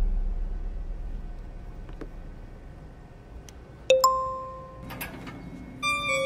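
An electronic chime: a low drone fades away, then a bright single ding rings out about four seconds in and dies away, followed by fainter chime strikes about a second later.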